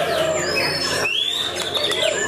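White-rumped shama (murai batu) singing: a few quick falling whistles, then a long clear whistle that rises and holds through the second half.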